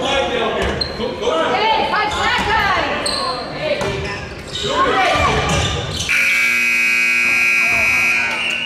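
Gym scoreboard buzzer sounding one long, steady horn blast starting about six seconds in: the horn ending the first half. Before it come shouting voices and basketball bounces echoing in the hall.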